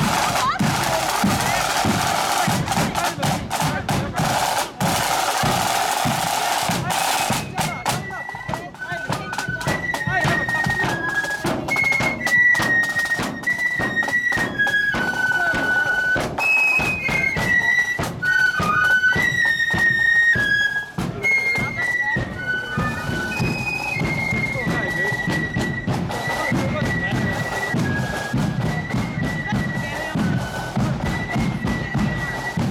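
Marching flute band: side drums beat alone for the first eight seconds or so, then the flutes come in with a high tune over the drumbeat.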